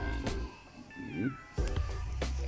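Background music with a steady beat. During a brief lull about a second in, a newborn puppy gives a short whimper that bends up and down in pitch.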